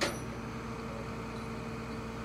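Steady mechanical hum of idling vehicles over a light hiss, with one short click right at the start.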